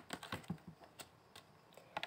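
Round tarot cards being handled: a string of light, sharp clicks and taps as a card is set down and the deck is gathered and squared, several close together at first, then a few spaced out.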